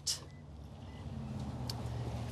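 A low, steady engine hum that grows gradually louder.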